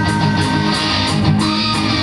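Live rock band playing, guitars to the fore, in a stretch without singing.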